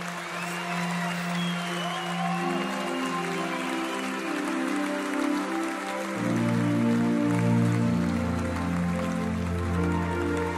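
Opening of a live concert recording: sustained synthesizer chords that build as layers are added, with a deep bass line joining about six seconds in, over a haze of crowd noise.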